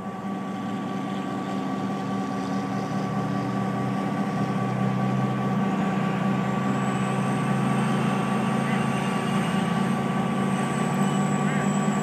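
Steady motor-vehicle engine hum that grows gradually louder over the first several seconds, then holds steady.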